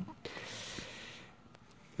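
A faint short exhale, a soft hiss of about a second, then near silence.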